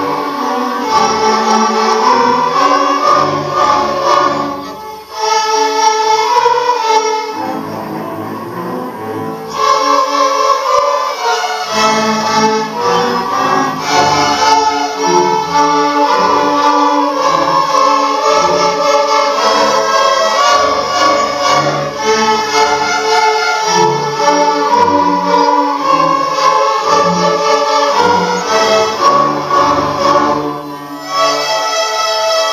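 Student string orchestra of violins, cellos and double basses playing a square-dance piece together, with a brief break about five seconds in and a thinner, quieter passage a few seconds later before the full ensemble comes back in.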